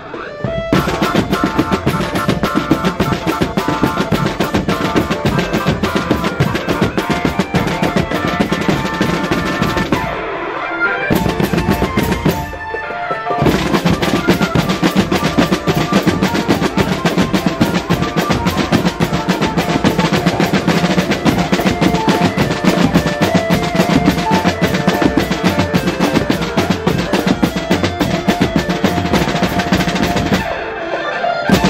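A marching drum band playing a fast, steady rhythm on snare, tenor and bass drums, with a pitched melody line over the drumming. The playing thins out briefly twice near the middle, then carries on.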